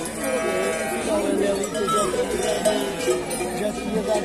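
A large flock of sheep bleating, many calls overlapping, with the clank of their neck bells (chocalhos) and people talking.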